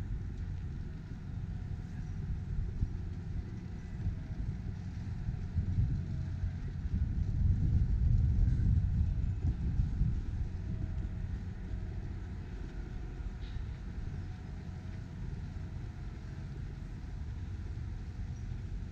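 Low outdoor rumble that grows louder for a few seconds around the middle.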